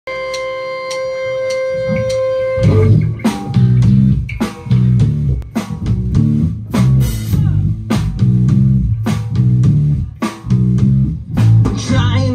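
Live rock band playing an instrumental intro on electric guitars, bass guitar and drums. A single held chord opens it, then the full band comes in together about two and a half seconds in with a steady beat and a busy bass line.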